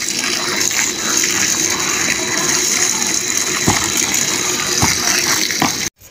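Water gushing steadily from a garden hose and splashing onto a wet heap of earth and straw as it is mixed with a hoe, with a few short knocks in the second half. The sound breaks off abruptly just before the end.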